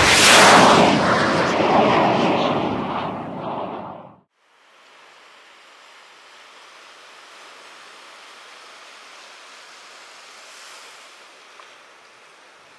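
A loud rush of noise starts sharply and fades over about four seconds, then cuts off. After a short pause, ocean surf washes steadily and faintly.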